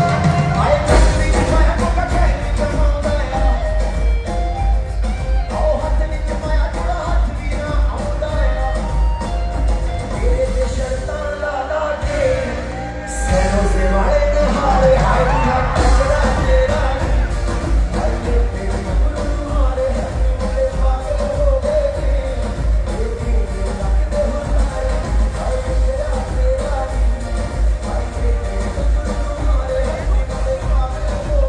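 Live Punjabi pop performance over a PA: a male singer's vocals over an amplified band with a steady, heavy bass beat. The beat drops out for about a second near the middle, then comes back in full.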